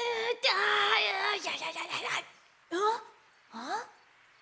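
A cartoon boy's voice making wordless sounds: one long held strained cry lasting about two seconds, then two short rising cries of surprise near the end.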